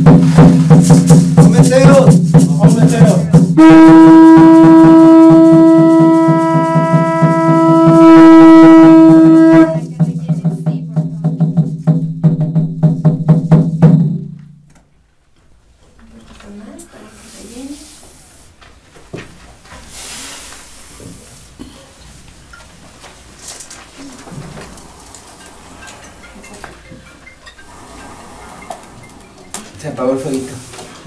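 A loud, long horn-like blown note held for about six seconds over a low steady drone with fast, dense beating; the drone and beating stop suddenly about fourteen seconds in, leaving only faint low sounds.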